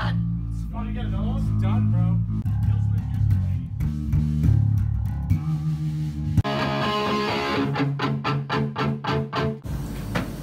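Electric bass playing sustained low notes through an amp, with a voice over it early on. About six seconds in, a harsh distorted noise joins, pulsing several times a second, then cuts off suddenly near the end. This is typical of the guitar amp head that keeps acting up and that the players blame as the faulty part.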